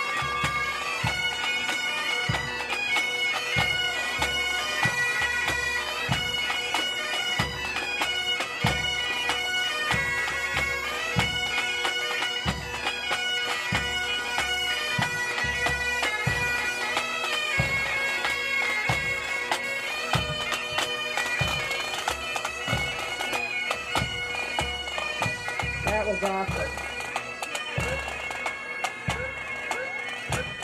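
Pipe band marching past: Great Highland bagpipes playing a tune over their steady drone, with a bass drum beating about once every three-quarters of a second. The band gets a little fainter near the end.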